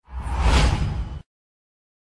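A whoosh transition sound effect for an animated news graphic, swelling for about a second over a deep low rumble and cutting off abruptly.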